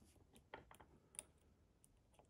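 Faint, scattered clicks of a dimple pick working the pin-in-pin stacks of a Mul-T-Lock Integrator dimple cylinder, the loudest about a second in, while tension holds the plug in a false set.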